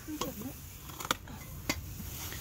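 A child's faint murmur, with three short sharp clicks spread through the two seconds.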